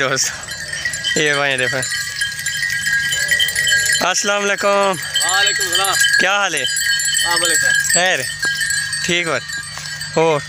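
Sheep bleating, a string of separate calls one after another, each rising and falling in pitch.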